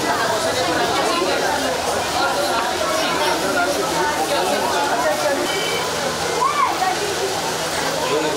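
Many voices talking over one another: a crowd of children and adults chattering at once in a busy room, with no single voice standing out.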